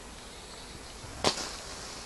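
A single sharp metal clack about a second in, from a small steel cup being handled on a camping stove, over a faint steady hiss.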